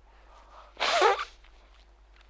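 A man sneezes once: a brief breath in, then one loud, sharp sneeze about a second in.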